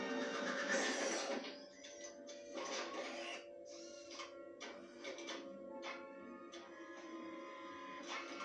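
Film soundtrack playing from a TV speaker and picked up in the room: held music tones, a loud burst of noise about a second in, then a string of irregular sharp knocks.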